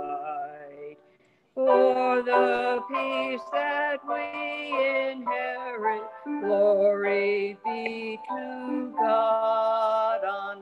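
A woman singing solo, in held, pitched phrases, with a short breath-pause about a second in.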